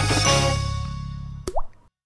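A jingle ending on a held chord that fades away, then a single water-drop 'plop' sound effect with a quick upward pitch glide about one and a half seconds in.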